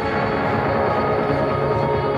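Title-sequence music: steady, held electronic chords at an even level.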